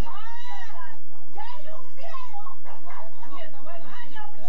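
Young people's voices: a long high-pitched cry that rises and falls in pitch in the first second, then overlapping excited talk and shouts.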